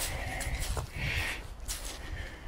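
A person breathing loudly and heavily while walking, close to the microphone, with a few breaths in and out, over a low rumble on the mic.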